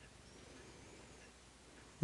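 Near silence: room tone, with a very faint, thin, wavering high tone lasting about a second in the middle.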